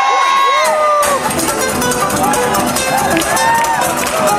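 Concert crowd whooping and cheering. About a second in, two acoustic guitars come in with fast, percussive strumming that runs on.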